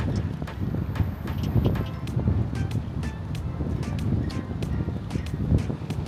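Wind buffeting the microphone in a steady low rumble, with background music playing underneath.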